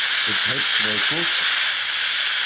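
A steady hiss, with a man's voice saying a few indistinct words over it early on.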